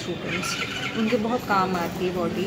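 Speech only: a woman talking in Hindi without pause.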